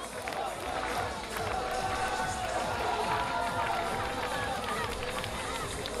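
A crowd clapping and cheering steadily, with scattered shouts from the audience: applause for the winner at the end of a wrestling match.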